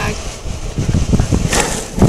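Low rumbling noise on a body-worn camera's microphone, the kind made by wind and the camera moving on the wearer, with a short hissing rustle about a second and a half in.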